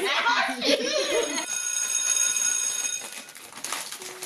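People's voices and laughter, then a high, steady ringing tone made of several pitches, lasting about two seconds.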